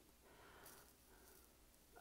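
Near silence: faint room tone with a soft breath, the singer's intake of air before the first sung phrase.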